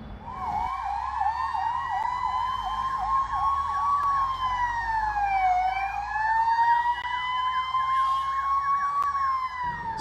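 Ambulance sirens sounding together: a fast, repeating yelp over a slower wail that slides down and climbs back up about midway. They start about half a second in and cut off just before speech resumes.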